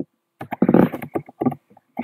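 Computer keyboard being typed on in a quick run of clicks and clatters as a key ID is entered, followed by a short breathy rush near the end.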